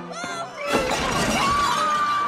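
A sudden crash with shattering, like breakage, about three quarters of a second in, over orchestral film music.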